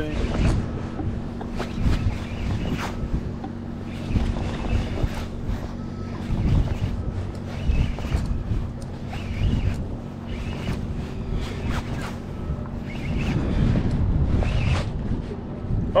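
Boat engine idling with a steady low hum, under wind buffeting the microphone.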